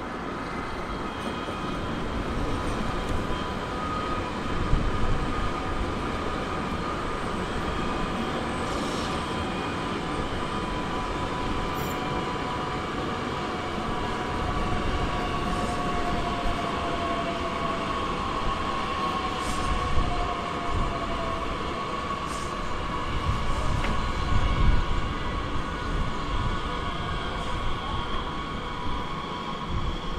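Electric train running along the tracks: a steady rolling rumble with a high whine from the traction motors that slides slowly in pitch, and a few faint clicks.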